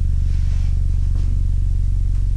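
Steady low electrical hum with a stack of overtones, loud and unchanging, with a faint swish of a long rope being swung through the air.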